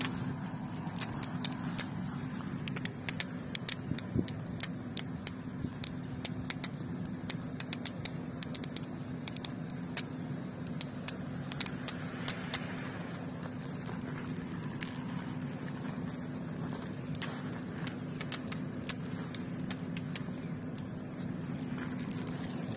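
Garden hose, boosted by a half-horsepower surface pump, spraying water onto vegetable beds: a steady low hum with many scattered crackling ticks.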